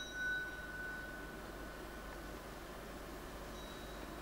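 Faint tail of a brass ensemble chord dying away in the concert hall, with a thin high ringing tone fading out over the first second and a half, then steady low hall noise.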